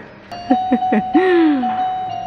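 Electronic chime-like music with steady, held bell-like notes, starting about half a second in.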